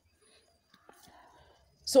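Near silence with a faint click about halfway through, then a voice starts speaking at the very end.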